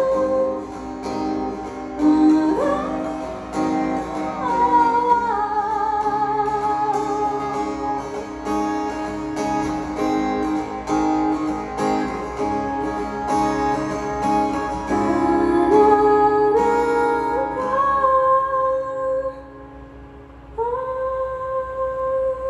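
A woman singing live to her own acoustic guitar accompaniment, in long held notes with slides between pitches. The music drops quiet for about a second a couple of seconds before the end, then the voice comes back in on a new phrase.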